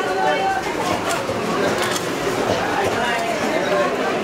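People talking in a busy fish market, with a few short knocks as fish are chopped on an upright boti blade.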